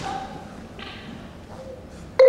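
A quiet large hall: low room noise with a faint, brief voice sound at the start and a soft hiss about a second in. No music is playing yet.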